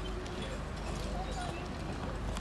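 Hoofbeats of a four-in-hand pony team trotting on sand, with voices in the background.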